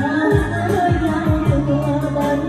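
A woman singing into a microphone over backing music, with a regular kick-drum beat, held bass notes and light cymbal ticks.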